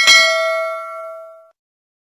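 Notification-bell sound effect marking a click on the bell icon: a single bright ding that rings out and fades away within about a second and a half.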